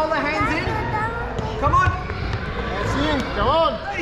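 A group of young children chattering and calling out over one another, high voices rising and falling, with a few sharp knocks scattered through.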